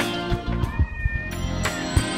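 Background music with a regular beat, over which a cat gives one short meow about a second in.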